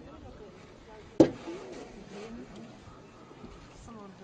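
A single sharp knock about a second in, over faint low murmuring.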